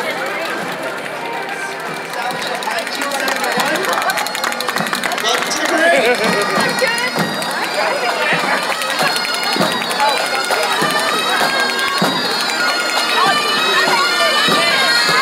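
A pipe band's bagpipes playing as the band approaches, growing louder toward the end, over the chatter of a street crowd.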